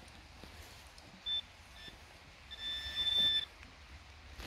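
Metal detector's high, steady electronic tone signalling a buried target: a short beep a little over a second in, a faint blip just after, then a longer tone lasting about a second.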